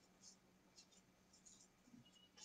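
Near silence: faint room tone with a low steady hum and a few faint, brief scratchy rustles.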